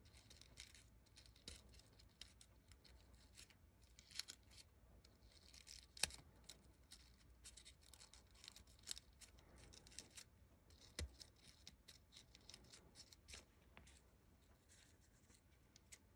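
Faint rustling and crinkling of paper petals being bent open and shaped by fingers, with scattered soft ticks; a sharper click about six seconds in.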